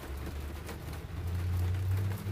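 A low, steady rumble that slowly grows louder, with a faint hiss above it.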